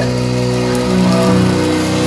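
Live worship music: held instrumental chords in a pause between sung lines of a gospel song.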